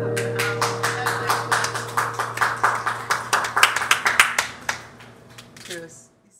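A small group of people clapping at the end of the song, over the last acoustic guitar chord ringing out. The applause thins and fades away about five seconds in.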